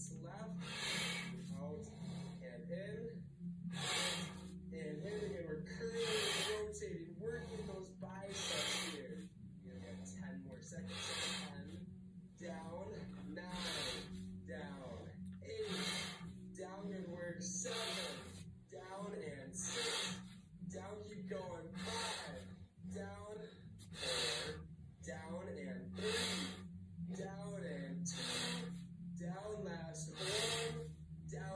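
A man breathing hard through his mouth from the effort of a dumbbell arm workout, with a loud gasping breath about every two seconds, over a steady low hum.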